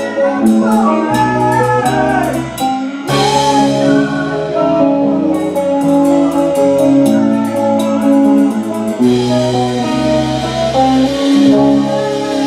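Live band playing: a drum kit with rapid cymbal and drum strokes over held guitar chords that change every second or so. The drumming comes in dense runs, one at the start and another from about five to nine seconds in.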